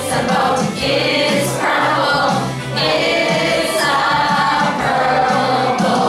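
Children's English-learning song playing: several voices singing over a steady beat.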